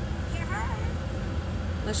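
Steady low hum of a small Scion car idling while parked, heard from inside the cabin. A brief snatch of a voice comes about half a second in.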